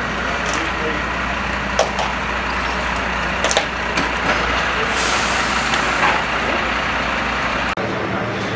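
A large vehicle's engine running steadily, with a few sharp clicks and knocks over it.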